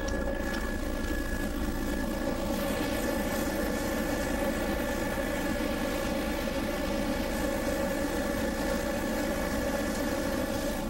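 Steady drone of the survey aircraft's engine, heard from inside the cabin: an even, unchanging hum with several steady tones.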